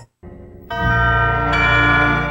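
Bell-like chime sting for a TV production-company logo: after a brief gap and a faint tone, a rich sustained chord comes in under a second in and rings steadily.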